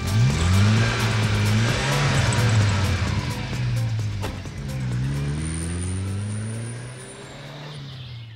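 A car engine revs up sharply, then runs at a low, slightly wavering pitch over a rushing noise. It revs up again about five seconds in and fades away near the end.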